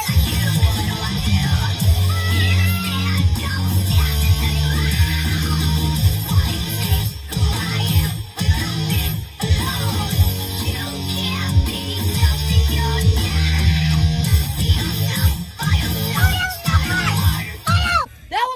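Loud rock music blasting, with electric guitar, bass and drums driving a steady beat; it cuts off suddenly at the end.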